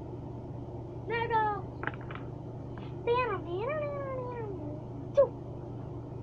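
High-pitched, meow-like vocal calls: a short one about a second in, two longer ones in the middle that rise and then fall in pitch, and a brief sharp one, the loudest, near the end.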